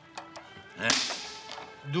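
Backgammon dice rolled on a wooden board: a few light clicks, then about a second in a short swish with a rising tone.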